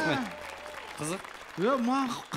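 Studio audience applauding, with men's voices talking over it at the start and near the end.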